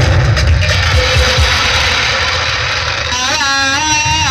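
Live drum music: heavy drumming under a dense high wash of sound, with a high, wavering melody coming in about three seconds in.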